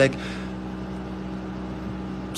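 A pause in the talking filled by a steady low background hum with a faint hiss, two held low tones running through it without change.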